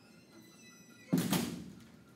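A faint high squeak, then a single dull thud about a second in that fades over half a second.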